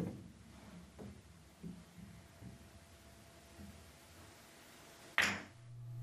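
Pool balls running after a fast bank shot, with a few faint knocks as they rebound off the cushions, then one sharp, louder knock a little past five seconds in.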